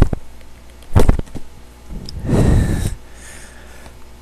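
Strikes landing on a homemade striking pad made from an old bar-stool seat cushion: two dull thuds about a second apart, then a longer rushing noise lasting most of a second.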